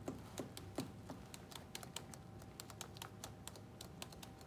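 Faint, irregular light clicks and ticks of plastic being handled: a manifold, syringe and catheter tubing worked by gloved hands while the syringe is drawn back to check the line for air.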